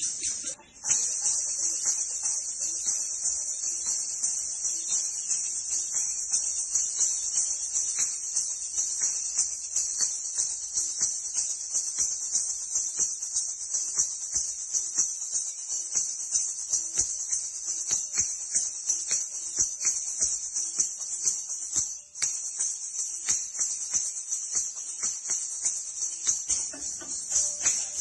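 Kathak ghungroo ankle bells jingling in a continuous high shimmer while the dancer stamps out rhythmic footwork (tatkar), with a brief break about 22 seconds in.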